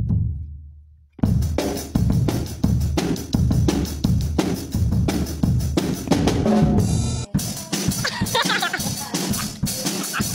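Acoustic drum kit: a single hit rings out and dies away, then about a second in a fast, steady beat starts on bass drum, snare and cymbals and keeps going.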